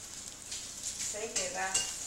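Paper wrapping crinkling and rustling as a toddler handles it at his mouth, with a short voice sound a little past halfway.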